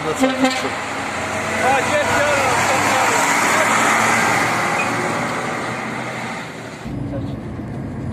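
KamAZ diesel truck driving past close by, its engine and tyre noise swelling to a peak about three to four seconds in, then fading. A voice is heard briefly near the start, and just before the end the sound changes abruptly to a lower, steady rumble.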